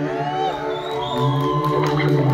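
Live band music: a slow passage of long held notes, with a melody line gliding up and down above them.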